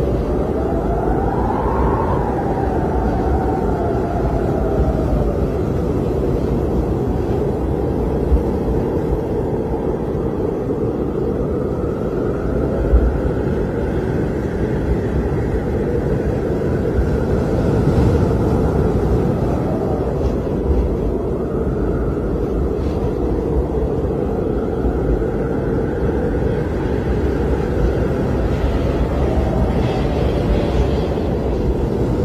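Blizzard wind blasting against a phone microphone: a loud, steady deep rumble, with a faint whistling howl that slowly rises and falls.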